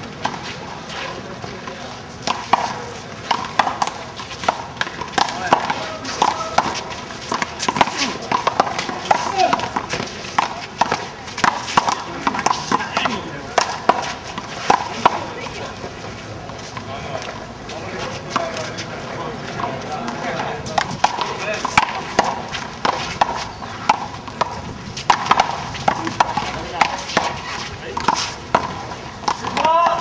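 One-wall handball being played: the rubber ball slaps sharply and irregularly off the hand, the concrete wall and the ground, many short smacks, with players' voices calling out.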